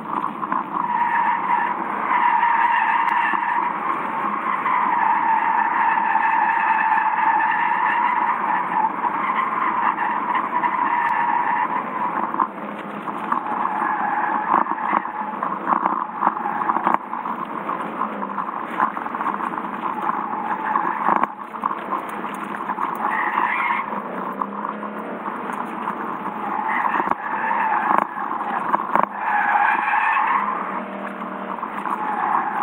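Lexus's tyres squealing as the car slides sideways in drift practice, heard from inside the cabin with the engine running underneath. The squeal wavers in pitch and is almost unbroken for the first twelve seconds, then comes and goes in shorter stretches.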